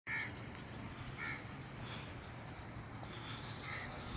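Three short bird calls, one at the start, one about a second in and one near the end, over faint low background noise.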